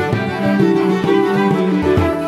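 Irish traditional instrumental music from a band recording: a fiddle carrying the tune over a steady rhythmic accompaniment.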